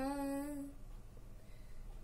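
A boy's unaccompanied voice holds a steady sung note that ends under a second in, followed by a quiet pause with only a faint low hum in the room.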